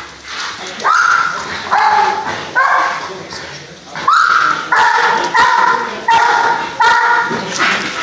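Dog barking in a run of about eight loud, high-pitched barks, coming closer together in the second half.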